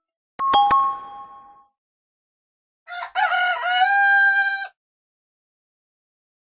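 Phone ringtone sounds: a few quick, bright chime strikes that ring out for about a second, then, about three seconds in, a recorded rooster crow that bends in pitch and ends on a held note.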